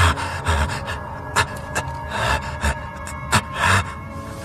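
A man gasping and laughing in short, irregular breathless bursts, over background music.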